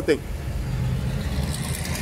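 Passing cars at a street intersection: a steady low engine rumble with tyre hiss that grows in the second half.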